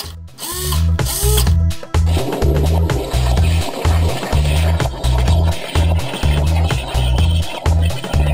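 A hobby servo motor whirs in two short sweeps as it swings through its full 180 degrees. About two seconds in, electronic dance music with a steady beat takes over.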